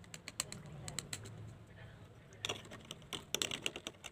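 Quick light clicks and taps of small acrylic paint tubes and their caps being handled: a run of clicks in the first second, then two denser clusters in the second half.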